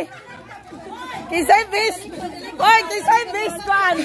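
People talking and chattering, several voices overlapping in conversation.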